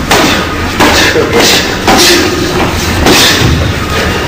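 Boxing gloves landing short punches in sparring: several dull thuds at uneven intervals, about half a second to a second apart.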